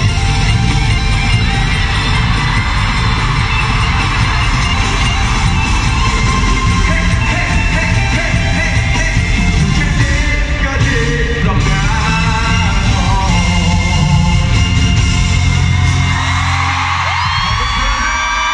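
Live pop song with singing, played loud over an arena sound system, with a heavy beat and fans' yells and whoops over it. The beat drops out about two seconds before the end, leaving held notes.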